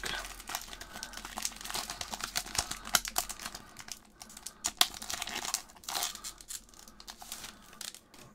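Foil wrapper of an Upper Deck Artifacts hockey card pack crinkling and tearing as it is peeled open by hand, with irregular sharp crackles. It is louder at first and quieter near the end.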